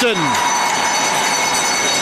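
Ice hockey rink crowd cheering steadily just after a goal.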